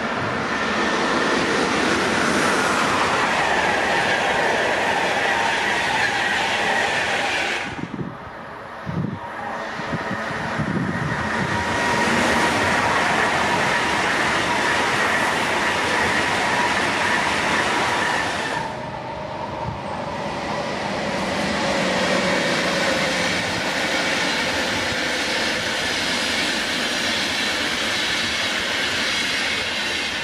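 Electric passenger trains running through a station: first the coaches of a Flixtrain hauled by a Siemens Taurus electric locomotive, then a white ICE high-speed train, each a steady rush of wheel and rail noise with a faint steady tone over it. The sound breaks off abruptly twice, the first time with a brief dip in level, as one passing gives way to the next.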